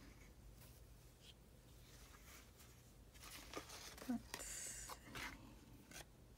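Quiet room tone, then from about three seconds in, soft rustling as hands handle lace and fabric scraps, with a short low murmur near four seconds.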